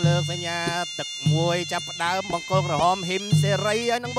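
Traditional Kun Khmer fight music: a nasal, reedy pipe plays a winding melody with bending, ornamented notes over a low beat that repeats about once a second.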